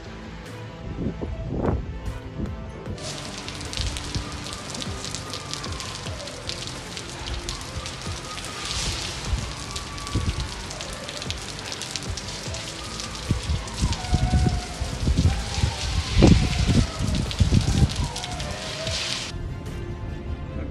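Heavy hurricane rain and gusting wind, cutting in sharply about three seconds in and stopping abruptly just before the end. In the second half, gusts buffet the microphone in loud low rumbles. Background music plays underneath.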